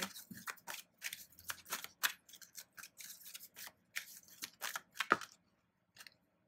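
A deck of oracle cards being shuffled by hand: a quick run of papery flicks and clicks, ending with a sharper snap about five seconds in.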